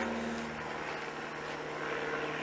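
Steady drone of a distant propeller aircraft engine, its pitch falling slightly about the start, with dry leaf litter rustling underfoot.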